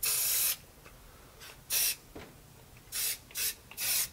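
Aerosol spray paint can sprayed in short hissing bursts onto the water in a tub, laying down paint for hydro dipping: five bursts, the first the longest at about half a second, then one short one and three quick ones near the end.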